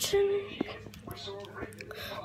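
A young person's soft, half-whispered voice in short broken fragments, opening with a brief hiss and with a couple of faint clicks.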